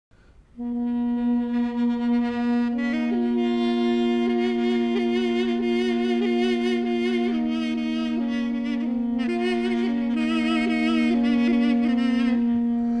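Instrumental opening of a Kurdish folk song: a reed woodwind holds a steady drone note. From about three seconds in, a woodwind melody with wavering ornaments plays above it.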